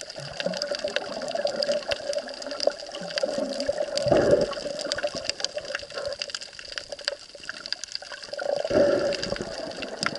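Underwater water noise picked up by an action camera while snorkeling: a steady wash scattered with small clicks, with two louder bubbling surges, about four seconds in and again near the end.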